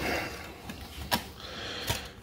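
Light handling noise of plastic compact discs being moved and picked up, with two sharp clicks, one about halfway through and one near the end.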